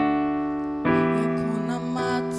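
Piano chords on a stage keyboard: one chord struck at the start and a second about a second in, each held and slowly fading.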